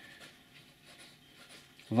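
Faint scratching of a steel fine-nib fountain pen writing on paper.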